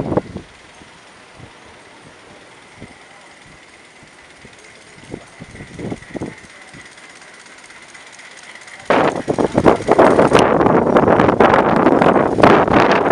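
Miniature steam locomotive with a passenger car on a raised track, faint at first with a steady high tone and a few soft knocks. About nine seconds in the sound jumps suddenly to a loud, rapid clatter of wheels on the rails as it runs close by.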